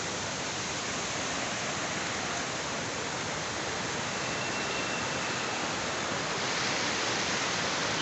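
Waterfall water rushing down rock, a steady, fairly loud noise, swollen by recent rain.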